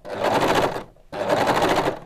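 An overlocker (serger) runs in two short bursts of about a second each with a brief pause between. It stitches and trims the fabric edge as the fabric is pressed against the knife and fed around a tight curve.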